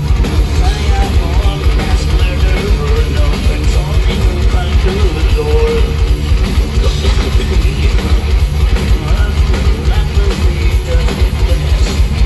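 Heavy metal band playing live and loud: distorted electric guitars over fast, driving drums.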